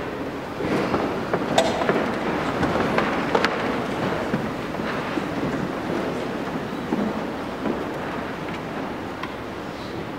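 A congregation getting down to kneel: a steady rumble of shuffling and rustling, with a few sharp knocks, about one and a half and three and a half seconds in.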